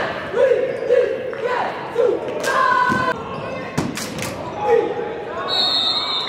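Basketball bouncing on a hardwood gym floor, several sharp bounces in the middle, amid players' and spectators' voices.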